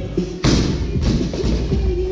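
A loaded barbell with bumper plates dropped onto rubber gym flooring: one heavy thud about half a second in, over background music with a steady beat.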